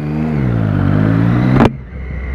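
Motorcycle engine pulling away from a stop, its pitch dipping and rising under throttle. A sharp click comes near the end, after which the engine drops quieter.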